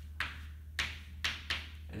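Chalk writing on a chalkboard: about five short, sharp taps and scrapes as letters and an arrow are drawn.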